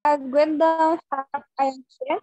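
A person's voice on a video call: about a second of drawn-out, steady-pitched syllables, then a few short ones.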